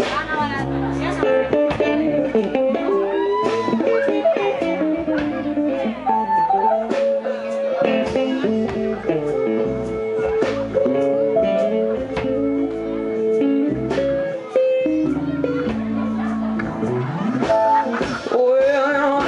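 Live band playing an instrumental passage: acoustic guitars picking melody lines over a bass guitar, with keyboard.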